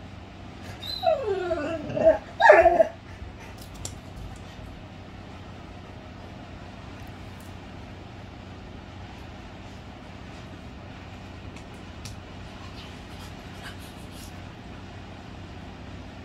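A dog vocalizing in a few short cries that fall in pitch, starting about a second in, with the loudest cry near the three-second mark.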